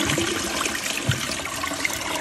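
Dual-flush toilet flushing: water rushing and swirling down the bowl, easing off slightly, with a brief low knock about halfway through.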